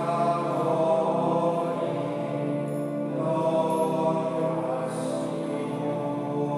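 Slow sacred chant sung in long held notes over steady sustained chords.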